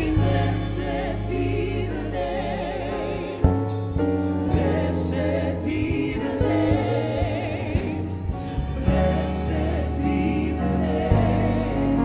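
Gospel praise-and-worship singing: a group of voices singing with vibrato over a band with a steady bass line, with sharp drum hits through it, one standing out about three and a half seconds in.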